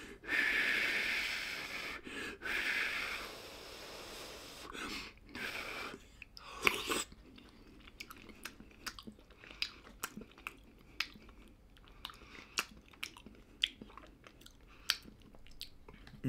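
A man eating a spoonful of ground-meat soup: a long noisy breath over the hot mouthful for about the first three seconds, then chewing with many small wet mouth clicks.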